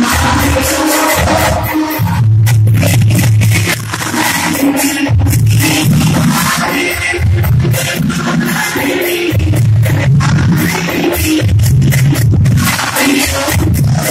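A woman singing a devotional song through a PA microphone, accompanied by harmonium and a steady beat of percussion.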